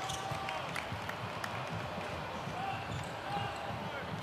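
Basketball being dribbled hard on a hardwood court, the ball's bounces coming as irregular low thuds mixed with players' running footsteps.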